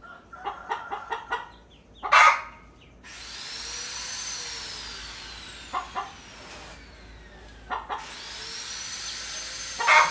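Mother hen clucking in a short run of calls, then a loud squawk about two seconds in and another at the end. From about three seconds a steady hiss with a slowly falling whine runs under a few more short clucks.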